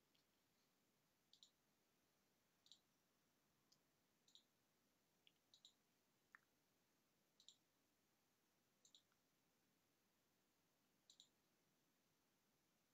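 Faint computer mouse clicks against near silence: about a dozen short clicks, irregularly spaced, several in quick pairs like double-clicks.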